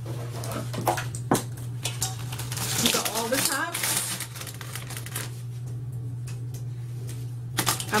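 Plastic pump and dropper tops clicking and clattering against one another and a stainless steel bowl as they are handled and set down, in irregular clicks over a steady low hum.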